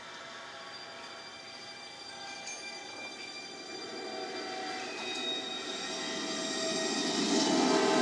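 ImageMovers studio logo sound effect off a VHS tape: a streamlined train approaching, its rumble and a stack of steady horn-like tones swelling louder and louder.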